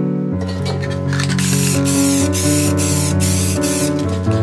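Aerosol spray-paint can hissing in about five short bursts over two and a half seconds, starting a little over a second in, over steady background music.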